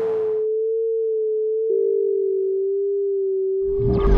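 Electronic sine tone from an algorithmic SuperCollider piece, held steady as a single pure pitch. A dense layered texture drops away about half a second in, the tone steps down a little in pitch with a click near halfway, and a dense pulsing texture comes back in just before the end.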